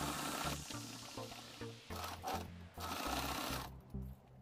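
Sewing machine stitching in short runs, starting and stopping about four times, as a zipper is sewn onto the denim panel.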